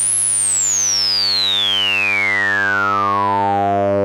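A 100 Hz sawtooth buzz run through the ADE-20 analog filter in all-pass mode at full resonance, with the cutoff being swept. A bright resonant whistle peaks high just after the start, then glides steadily down through the buzz's harmonics.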